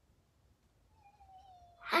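Near silence for about a second, then a girl's soft, drawn-out vocal sound, slightly falling in pitch, that runs straight into a loud exclamation at the very end.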